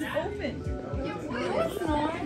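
Classroom chatter: several students talking over one another, with music in the background.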